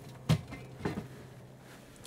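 Refrigerator door being shut: a knock about a third of a second in and a softer one just under a second in, over a low steady hum that stops about halfway through.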